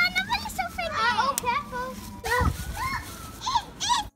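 Young children chattering and exclaiming excitedly in high voices, with a sharp click a little after a second in and a low thump just past halfway.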